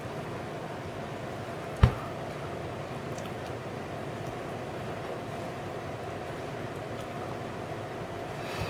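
Steady background hiss and hum of a small room, with one sharp knock about two seconds in.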